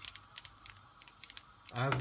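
Coriander seeds, cumin seeds and peppercorns dry-roasting in a frying pan, giving a scattering of about ten sharp little pops as the hot seeds start jumping, a sign that the roast is nearly done.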